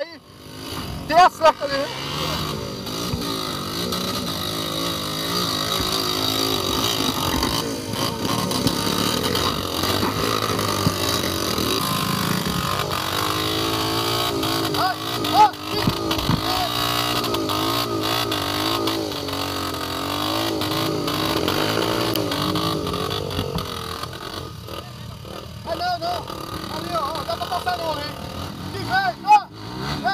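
Trail motorcycle engine revving again and again under load while the bike is stuck in a deep muddy rut, its pitch rising and falling as the rear wheel spins.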